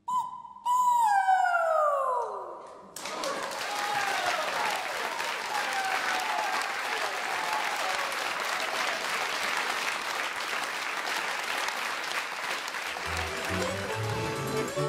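Two high whoops slide down in pitch, then a studio audience applauds steadily after an a cappella vocal group. A short music jingle starts just before the end.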